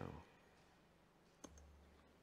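Near silence in a pause of speech, broken by a single sharp click about a second and a half in, followed by a faint low hum.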